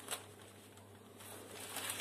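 Rolled oats trickling from a paper bag into a glass mug, a faint rustle and patter, with the paper bag crinkling as it is handled near the end.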